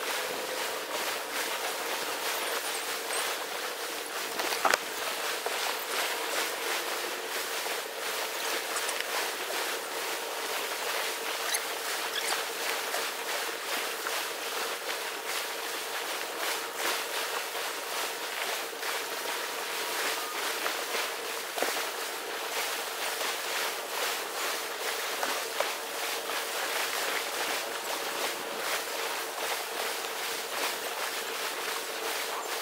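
Surf washing on a sandy beach as a steady hiss, with small clicks and scuffs of handling and footsteps in sand and one sharper knock about five seconds in. A faint steady hum runs underneath.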